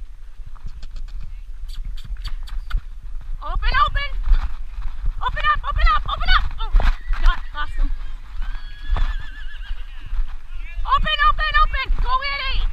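Horses whinnying, three quavering calls about four, six and eleven seconds in. Under them run hoofbeats in arena dirt and a low rumble of wind on the microphone.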